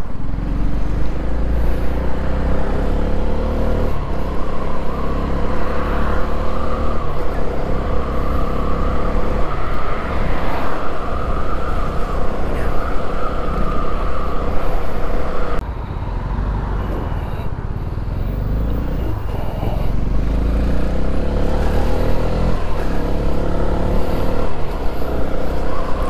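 Honda CB125R's 125cc single-cylinder engine running while riding, its pitch shifting up and down with the throttle, over heavy wind rumble on the microphone. About fifteen seconds in the sound drops abruptly and changes, building back up over the following seconds.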